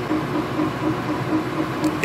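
Omtech Polar 350 CO2 laser engraver raster-engraving wood: the gantry's stepper motors sweep the head back and forth, giving a short tone that repeats several times a second over a steady hum of fans.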